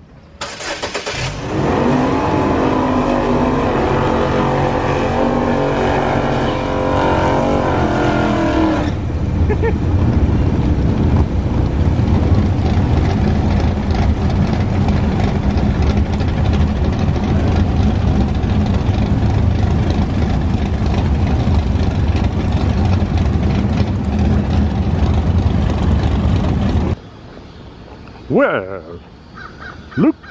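GMC Terrain SUV's engine starting about half a second in and running with a shifting pitch for several seconds. It then settles to a steady idle at the exhaust, which cuts off about three seconds before the end.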